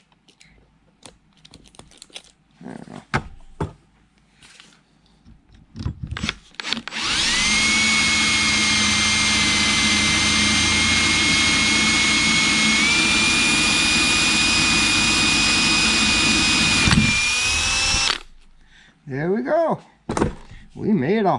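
Cordless drill boring a hole through a metal shaft clamped in a vise: a few handling clicks, then the drill runs steadily for about eleven seconds with a whine that steps up slightly in pitch partway through, and stops.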